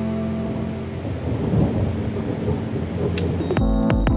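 A storm sound of rumbling thunder and rain-like noise, part of an electronic track, fills the gap where the synth chords drop away. About three and a half seconds in, the pitched chords and a low beat come back in.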